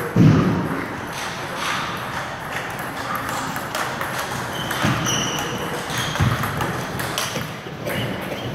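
A table tennis rally: the ball clicking off the paddles and the table again and again. A heavy low thump comes just at the start, the loudest sound here, and softer thuds follow about five and six seconds in.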